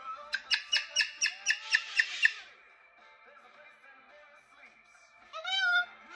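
Moluccan cockatoo calling: a rapid run of about ten sharp, high-pitched calls, four or five a second, over the first two seconds. It is followed after a lull by one loud call that bends in pitch near the end.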